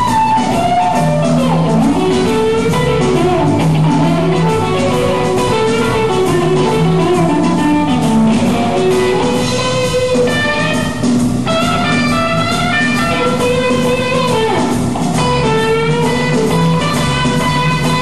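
Live blues-rock band: a Stratocaster-style electric guitar plays a lead line full of bent notes, over bass guitar and drum kit.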